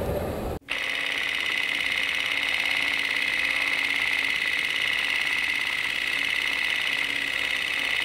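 A steady high-pitched whine with a faint low hum under it. It starts abruptly just over half a second in, right after the outdoor sound cuts off, and holds level with a fine flutter.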